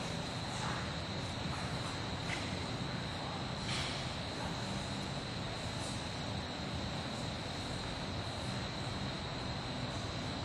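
Steady background hum and hiss of the room, with a faint thin high whine held throughout and no distinct events.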